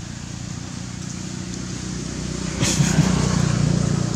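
Low hum of a motor vehicle engine, growing steadily louder as it draws closer, with a brief burst of crackling and knocks about two and a half seconds in.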